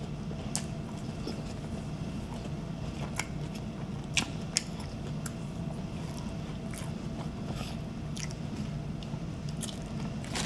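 A person chewing a mouthful of Whopper burger close to the microphone, with scattered short wet mouth clicks and smacks. A low steady hum runs underneath.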